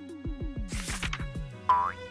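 Cartoon-style transition sound effect: a quick run of short, falling, springy bloops with a whoosh in the middle, then a bright pitched ping near the end, the loudest sound.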